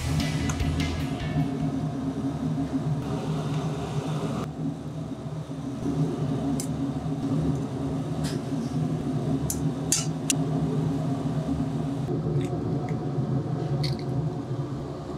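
Kitchen working noise: a steady low hum with a hiss over it, broken by a few sharp metal clinks of utensils against a stainless steel bowl.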